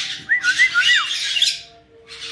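Caique parrot calling: a quick run of four or five warbling whistled notes, bobbing up and down, over harsh squawking that cuts off about a second and a half in.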